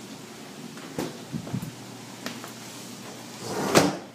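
Kitchen drawers and cabinet doors being handled. A few light clicks and knocks come first, then a louder sliding sound that ends in a thump near the end.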